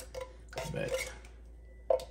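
Spatula scraping tomato sauce out of a metal can into a pot, with one sharp clink of metal near the end.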